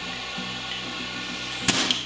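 One sharp click near the end as the hand-held ClickFast fuel-mixture tuning device is handled, over a low steady hum.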